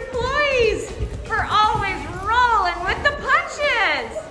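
Lively, high-pitched voices calling out with big swoops up and down in pitch, over a music track.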